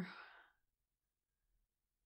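A woman's breathy sigh trailing off the end of her words, fading away within about half a second, then near silence.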